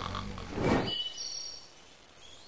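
A sleeping French bulldog snoring: one snort that swells and fades a little over half a second in, followed by a few short, high bird chirps.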